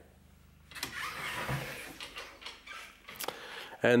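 Faint, irregular rustling and handling noise from a handheld camera being carried on the move, starting after a near-silent moment, with a single light click near the end.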